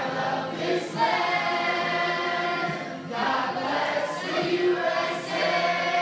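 A large group of children and adults singing a song together in unison, with held notes that change every second or two.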